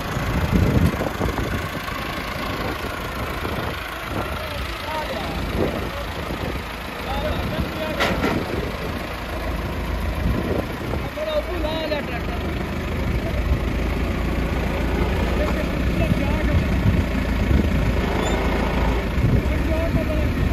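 Massey Ferguson 385 tractor's diesel engine running steadily, getting louder over the second half as the revs come up.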